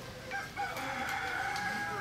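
A rooster crowing: one long call that starts about a third of a second in and is still going at the end.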